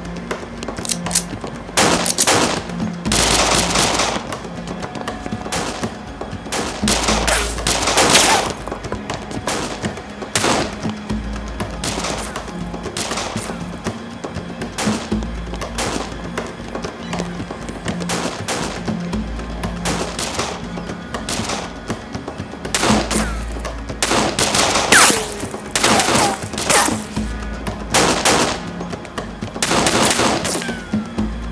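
Bursts of gunfire at irregular intervals over a dramatic music score with a pulsing low beat, the heaviest shooting about eight seconds in and again in the last few seconds.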